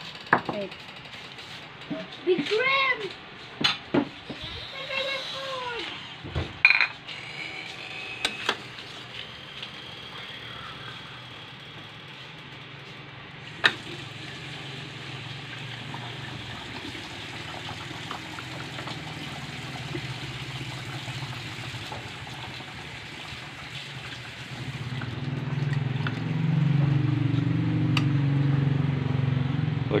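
Metal ladle clinking and scraping against an aluminium pot as hot soup is served into a bowl. There are a few short high calls, rising and falling, in the first seconds. A low droning hum swells over the last few seconds.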